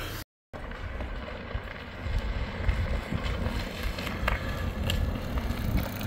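Wind buffeting the microphone while an Engwe Engine Pro fat-tire folding e-bike rolls over asphalt, a steady, uneven low noise.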